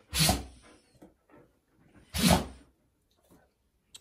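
Alaskan Malamute sneezing twice, about two seconds apart, each a sharp burst that trails off quickly. The owner has been told these sneezes are a sign of playfulness.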